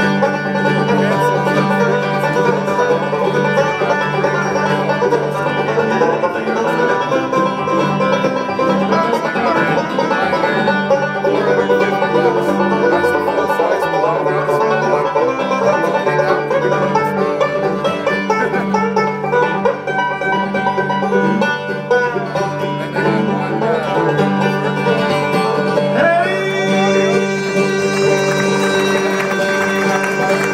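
Live bluegrass band playing acoustic string music on banjo, guitar, mandolin and upright bass. About four seconds before the end, a long held note starts and rings on.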